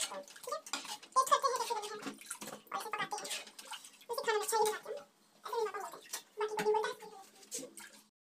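A steel ladle stirring thick curry in a steel kadhai, with light clinks and scrapes against the pan, under a person's voice talking.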